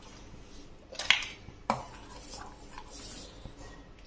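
Metal spoon clinking against a stainless steel saucepan of soup: a few sharp knocks about a second in, then one more shortly after.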